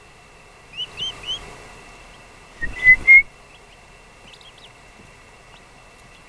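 Eastern wild turkey poults, two days old, peeping: three quick rising peeps about a second in, then a louder run of peeps near the middle with a brief rustle under them. A faint steady high tone runs beneath.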